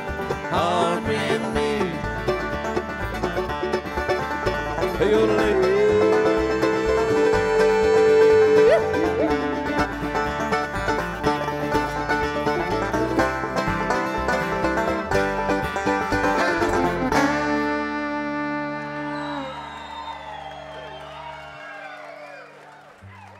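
Live bluegrass band of banjo, acoustic guitar, mandolin, upright bass and fiddle playing the instrumental close of a song, with a long held note near the middle. The band stops together about 17 seconds in and a last chord rings on and fades away.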